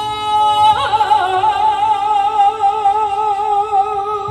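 A woman singing live, holding one long note with a wide vibrato that begins about a second in, over sustained keyboard accompaniment.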